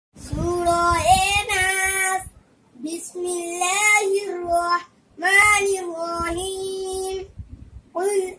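A young boy's voice chanting Qur'anic recitation in a melodic, drawn-out style: three long phrases with short pauses between them, holding the pitch on long vowels.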